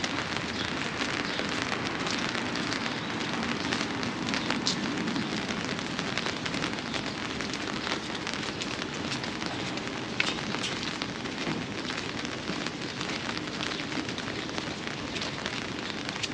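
Steady city street ambience heard while walking on a brick sidewalk: a continuous hiss with scattered light clicks and taps.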